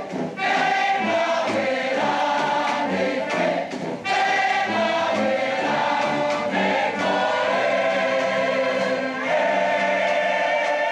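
A large choir singing in slow, long-held chords, with a short break between phrases about four seconds in.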